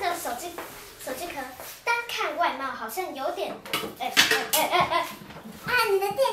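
Young children's voices chattering, with a few light knocks from things being handled on a wooden table about midway.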